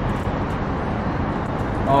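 A vehicle's engine running steadily as it drives across a parking garage deck, a low even hum over a rush of background noise.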